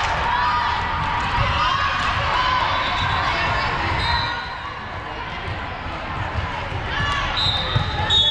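Busy indoor sports-hall din: many voices of players and spectators echoing in a large gym, with balls bouncing and being struck on the hardwood courts.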